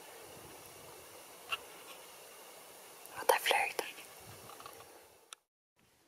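Quiet background hiss with a brief whisper about three seconds in, then the sound fades to silence near the end.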